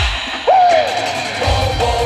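Live band music starting up: a sudden loud hit, then a male voice singing one note that rises and falls about half a second in, with a steady kick-drum beat and the band coming in about a second and a half in.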